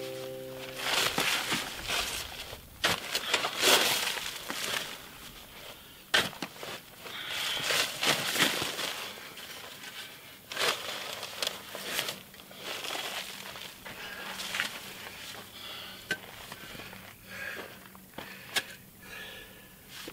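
Metal shovel scooping dry dirt and gravel and tipping it onto hardened paper concrete bags: an irregular run of gritty scrapes and crunches.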